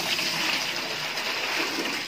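Water poured from a plastic jug into a plastic tub, a steady splashing gush as the tub fills.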